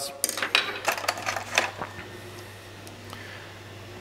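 Small hard plastic and metal lens-kit clips clicking and clattering as they are picked up and handled, several quick clicks over the first two seconds, then quieter handling with a low steady hum underneath.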